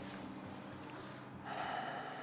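A soft, steady low drone from the background score, with a short breathy rush of sound in the last half second.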